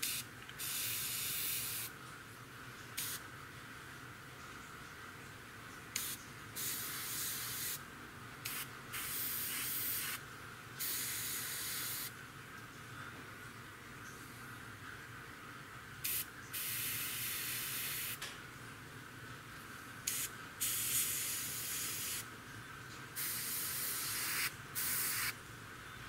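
Gravity-feed airbrush spraying paint in about a dozen short bursts of hissing air, most about a second long, as light touch-up passes on the front edges of small model parts.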